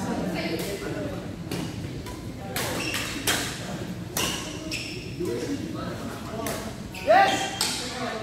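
Badminton rally: rackets striking a shuttlecock in a series of sharp hits about a second apart, ringing in a large hall. A loud voice calls out near the end.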